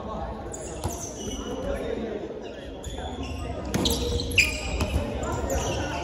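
A dodgeball hitting and bouncing on a wooden gym floor, a few sharp smacks with the loudest about four and a half seconds in, amid players' shouts echoing in a large hall.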